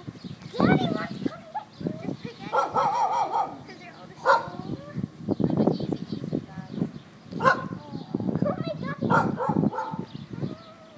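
Several young puppies making small barks and whines, mixed with children's excited voices.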